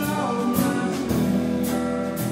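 Live country band playing a song: electric and acoustic guitars over a drum kit, with a steady beat of about two strikes a second.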